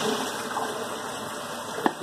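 Tap water running steadily into a kitchen sink, with one sharp click near the end.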